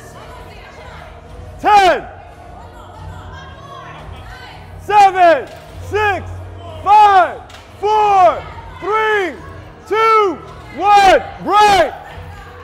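Loud short shouts of encouragement from a person cheering on a bench-press lift. There is one yell about two seconds in, then a run of about ten from five seconds on, roughly one a second. Each shout rises then falls in pitch.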